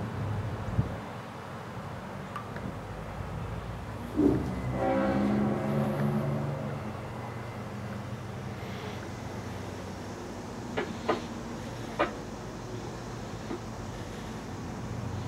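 A diesel locomotive horn sounds in the distance for about two seconds, starting about four seconds in, over a steady low rumble of idling engines. A few sharp knocks follow later on.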